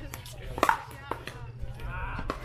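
Pickleball rally: a sharp, ringing pock of a paddle hitting the plastic ball about two-thirds of a second in, followed by a fainter knock about half a second later.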